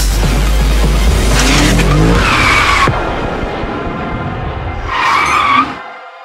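Sound-designed sports car effects over a music bed: an engine running hard and revving up, then two tyre squeals, the second near the end, cut off abruptly.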